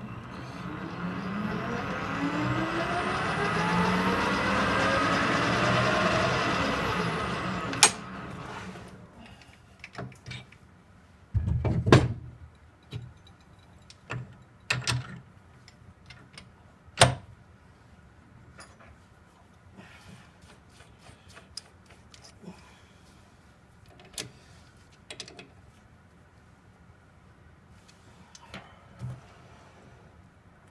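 Metal lathe spindle running with a rising whine while a centre drill spots the face of an aluminium block; the spindle stops with a click about 8 seconds in. After that, scattered clicks and a few heavier knocks as the centre drill in the tailstock chuck is changed for a twist drill.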